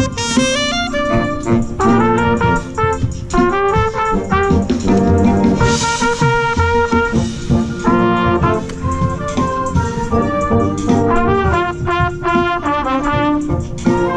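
Marching band brass music with a trumpet played right at the listener, its quick, short notes standing out over the rest of the band.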